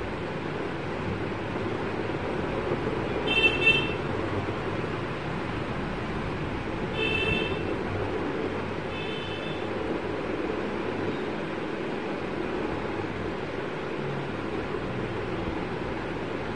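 Steady background noise with three short, high-pitched horn toots, about three, seven and nine seconds in; the first is the loudest.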